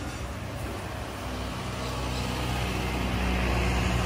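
A motor vehicle's engine rumbling on the street and growing louder over the last couple of seconds as it comes closer.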